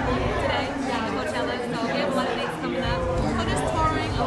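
A woman talking in an interview, over background crowd chatter and music.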